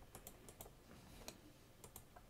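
Faint clicking from computer input: a few quick clicks in the first half-second or so, one about midway, and two close together near the end.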